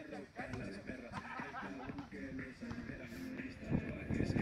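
Faint voices talking, not close to the microphone.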